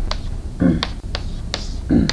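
Chalk tapping and clicking against a blackboard while digits and punctuation are written: about five sharp taps spread unevenly over two seconds.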